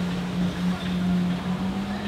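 Motorboat passing close: a steady low engine drone over the rushing wash of water from the hull and wake.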